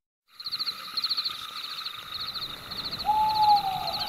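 Forest ambience of birds, starting a moment in: short, rapid, high-pitched chirping trills repeating in quick series. About three seconds in comes a single whistled call that falls slowly in pitch.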